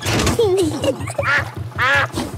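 A cartoon duck quacking a few times, in short calls that bend in pitch, over a steady, rapid low chugging rhythm from the canal boat's engine.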